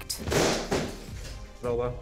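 A short rush of noise lasting under a second at the start, then a brief voice near the end, over background music.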